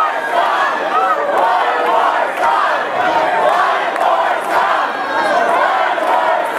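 Audience shouting and cheering, many voices at once.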